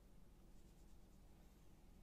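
Near silence with faint, brief scratchy rustling of fingers handling linen fabric, a cluster of soft ticks about half a second in.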